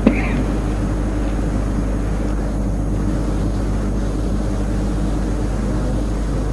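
Steady low hum with hiss, the background noise of an old lecture recording, with one short click right at the start.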